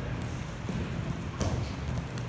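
Footfalls and low thuds on a foam wrestling mat as a man moves from his stance and drops onto his hands and feet, with one sharper slap on the mat about one and a half seconds in.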